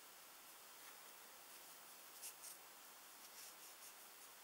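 Near silence, with a few faint, brief rustles about two seconds in and again near the end: cotton crochet thread drawn over a crochet hook as chain stitches are made by hand.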